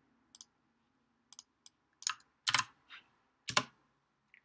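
About seven separate computer keystrokes and clicks at an irregular pace, a few of them sharper and louder about two and a half and three and a half seconds in.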